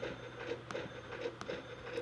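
Faint computer mouse clicks, about three in two seconds, over a low steady hum.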